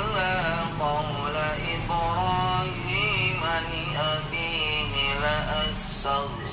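A man reciting the Quran in Arabic in a slow, melodic chant, his voice rising and falling in long phrases with brief pauses, over a steady low background hum.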